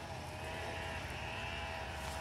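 Faint, steady background hum with a low rumble beneath it and a few thin, held tones, like a distant motor.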